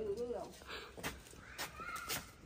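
A person's high, whinnying laugh trailing off about half a second in, followed by a quiet stretch with a few faint clicks and scuffs.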